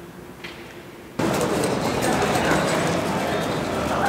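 Quiet background with a faint hum and a few soft clicks, then, just over a second in, an abrupt jump to the much louder sound of many people talking at once.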